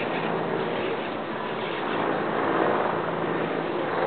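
An open chairlift in motion: a steady rushing noise with a faint low hum, unchanging throughout.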